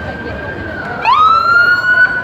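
Police car siren holding a high wail that dips about a second in, then sweeps sharply back up and sounds louder.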